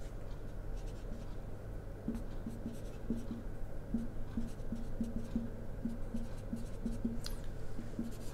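Marker pen squeaking and rubbing on a whiteboard as a curve is drawn, in short repeated strokes about two or three a second, over a steady low hum.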